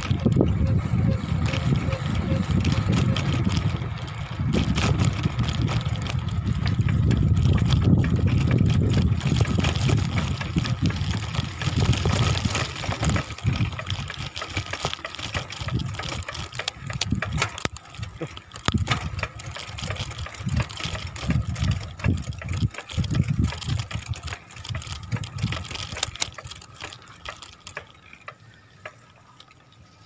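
Wind buffeting the microphone of a camera on a moving bicycle, with tyre and road noise: a loud, uneven rumble that is strongest for the first dozen seconds, then eases and grows faint near the end.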